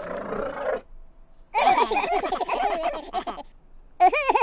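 Cartoon camel grunting: a rough, wavering call of about two seconds, starting about a second and a half in, after a short rough noise at the very start.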